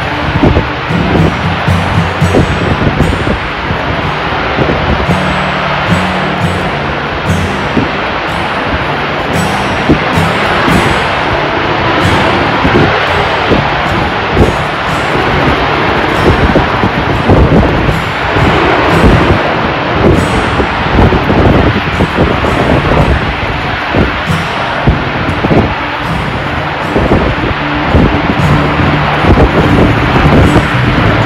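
Loud, continuous jet roar of a Harrier jump jet's Rolls-Royce Pegasus engine as the aircraft flies past, with music playing underneath, heard most near the start and near the end.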